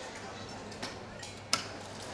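A few light, sharp clicks, the loudest about one and a half seconds in, over a low steady hum of room background.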